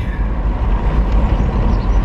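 Steady deep rumble of a moving car heard from inside its cabin: road and engine noise.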